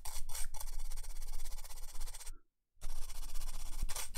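Toothbrush bristles scrubbing and stabbing at a laptop logic board's ribbon-cable connector wetted with alcohol: a fast, scratchy rubbing that breaks off for a moment a little past halfway, then resumes. The scrubbing is meant to clear corrosion from the connector's contacts.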